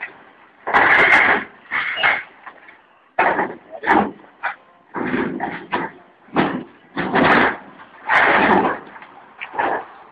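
A large appliance being shoved and worked into a pickup truck's bed: a string of about nine short, loud bumps and scrapes, mixed with grunts of effort.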